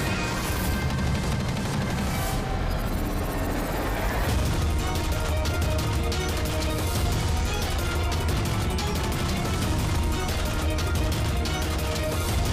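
Background music score with a heavy low end. A rising sweep leads into a fuller, slightly louder section about four seconds in.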